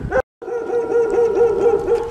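A dog howling in one long, steady, held note, after a brief dropout in the sound near the start.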